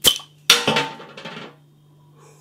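A crown cap being levered off a beer bottle with a bottle opener: a metallic click, then about half a second later a louder pop and a hiss of escaping gas that fades over about a second.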